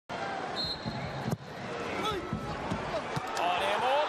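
Football match broadcast sound: voices over the play, with one sharp thud just over a second in and a few softer thumps.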